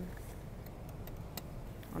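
Low steady background hum with a couple of faint clicks.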